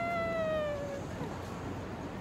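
A woman's long held shout, its pitch sliding slowly down until it breaks off about a second in, over the steady noise of a busy city street.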